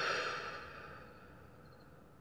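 A woman's long breathy sigh out, fading away over about a second.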